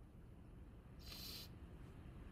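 A crying woman sniffles once, briefly, about a second in; otherwise near silence.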